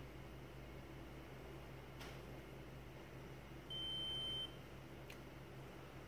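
SystemSURE Plus handheld ATP luminometer giving a single high-pitched beep, just under a second long, about two-thirds of the way in, as its measurement countdown ends and the surface reading is ready. A faint steady room hum lies underneath.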